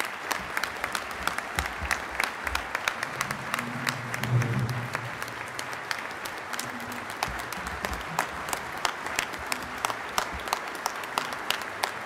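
A large audience applauding: dense, steady clapping that starts at once and holds at an even level. A short low voice shows through the clapping about four seconds in.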